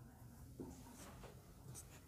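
Faint marker strokes on a whiteboard as a number is written, a few short scratches over quiet room tone.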